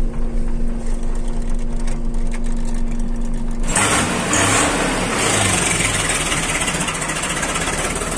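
Diesel engine idling with a steady hum; a little under four seconds in, the sound switches abruptly to a rougher, hissing running noise.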